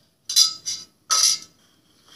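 Kitchenware clinking twice, about a second apart, as a metal pot is handled at a measuring jug on the counter, each clink with a short ring.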